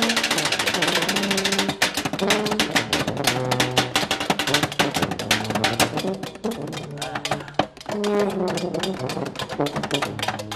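Junk-band percussion: rapid, clattering strikes on a trash can, can lids and tin cans, with short held notes from a dented horn over the beat.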